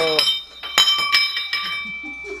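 A small metal object dropped from the engine bay hits the concrete floor: two sharp clinks about a second in, a third of a second apart, each leaving a high ringing tone that dies away.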